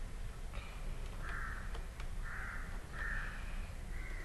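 A bird giving three short, harsh calls, faint behind a steady low hum on the line.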